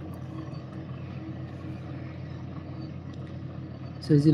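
Steady low machine hum, even throughout, with a faint steady tone above it.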